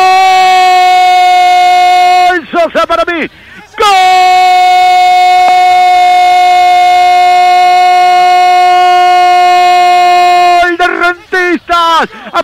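Radio football commentator's long goal cry: a shouted 'gol' held at one steady high pitch, broken about two seconds in by a few quick words and a breath, then held again for about seven seconds.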